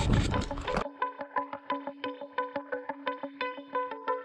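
Background music of sharply picked notes at about five a second over one repeated pitch. For the first second, noisy outdoor camera sound runs under it, then cuts off suddenly.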